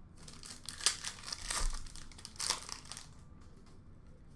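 Foil wrapper of an Upper Deck hockey card pack crinkling as it is handled and opened, with louder crackles about one, one and a half and two and a half seconds in.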